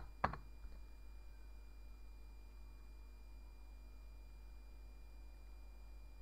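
A computer keyboard key struck once sharply about a quarter second in, with a few faint ticks just after, as a dimension value is entered. After that only a steady low hum and faint hiss remain.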